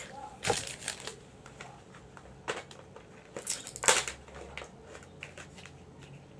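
CD packaging being handled and opened by hand: irregular crinkles and clicks, loudest about half a second in and around four seconds in.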